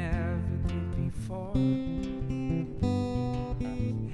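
Acoustic guitar strumming a steady rhythm in an instrumental passage between sung verses of a folk song.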